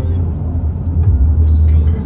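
Steady low rumble of road and engine noise heard from inside a moving car's cabin at highway speed.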